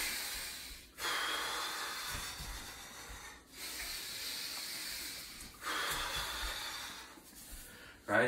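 A man's long, hissing breaths, one about every two seconds, from the effort of swinging a rope in circles.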